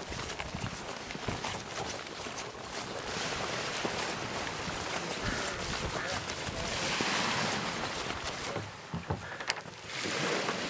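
Outdoor shoreline sound of people walking sea kayaks down a concrete boat ramp: irregular footsteps and scuffs, small waves at the water's edge, and wind on the microphone, with a voice or two.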